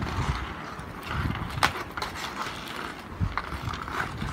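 Ice skates scraping and hockey sticks clacking against a puck on outdoor ice, in irregular strokes, with one sharp crack of a stick on the puck about a second and a half in.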